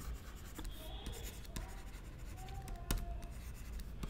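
Faint stylus writing on a tablet: short scratches and light taps of the pen tip as words are written, with one sharper tap about three seconds in.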